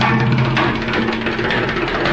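Empty plastic water cooler bottle played as a hand drum in a fast stream of finger and palm strokes. A low booming tone sounds under the strokes and stops a little under a second in.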